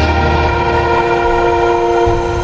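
Music: the closing chord of a pop-rock song held steady on several notes, with no drums.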